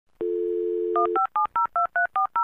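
A telephone dial tone, a steady two-note hum, then touch-tone keypad dialing: short two-note beeps at about five a second that start about a second in and cut the dial tone off.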